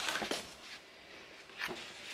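Faint handling of a paper sleeve and a cardboard gift box, with a couple of soft taps about one and a half seconds in.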